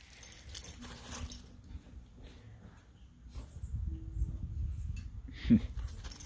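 Two dogs playing on gravel, their paws scuffling, with one short dog vocalization near the end.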